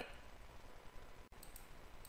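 Near silence: faint room tone, with two faint, short high clicks about one and a half seconds in.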